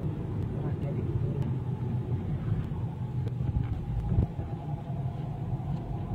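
Road and engine noise heard inside a moving car's cabin: a steady low rumble.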